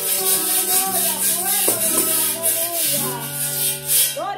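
Music: a cuatro-style plucked string instrument playing chords over held bass notes, with a shaker keeping an even beat.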